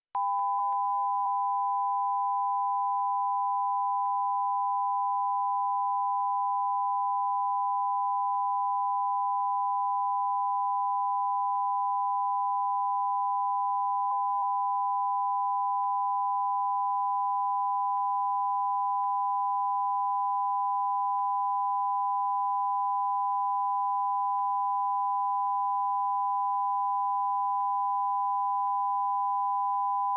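Broadcast line-up test tone sent with colour bars: two steady electronic tones a little apart in pitch, sounding together. It cuts in abruptly and holds unchanged in pitch and loudness.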